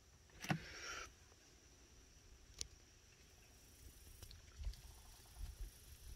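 Near silence with a few faint sounds: a click with a short hiss about half a second in, a sharp single click past the middle, and some soft low bumps near the end.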